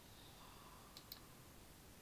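Near silence: room tone, with two or three faint short clicks about a second in.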